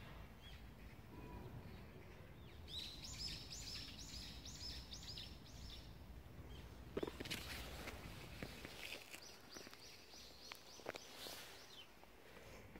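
A bird singing outdoors: a quick run of about seven repeated high, downward-sweeping notes a few seconds in, then a fainter run later, over a quiet outdoor background. A few short clicks and rustles are heard in the second half.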